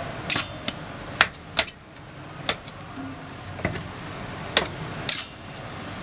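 Sharp, irregular clicks and knocks of a steel dough scraper against a stone counter and a metal scale pan as pizza dough is cut and weighed into portions, about eight in all, over a steady kitchen hum.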